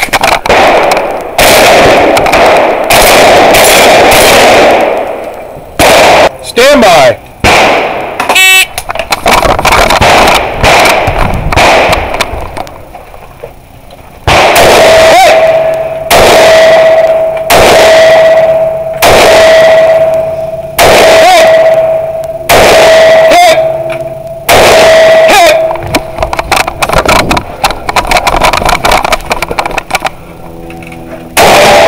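A competitor's firearm shooting at close range: loud, clipped shots, each with a short echo. There is a quick run in the first few seconds, scattered shots, then about one shot a second through the second half, with a steady tone sounding under the shots in the middle stretch.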